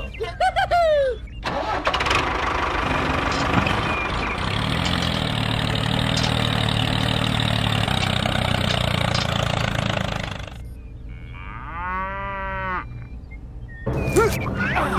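A tractor engine starts about a second and a half in and runs steadily, then cuts off suddenly about ten seconds in. A short, quieter warbling sound follows near the end.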